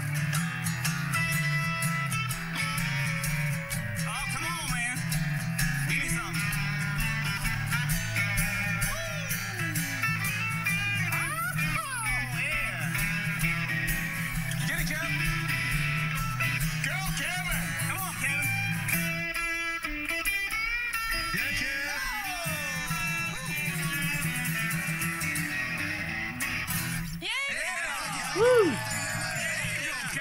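Electric guitar played through an amplifier: a blues in E, with bent lead notes over steady low notes, breaking off briefly about two-thirds of the way through.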